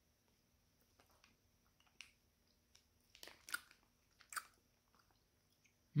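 A person chewing a soft gummy candy (a Swedish Fish) with the mouth closed: faint, scattered wet mouth clicks and smacks, a few louder ones about three and a half and four and a half seconds in.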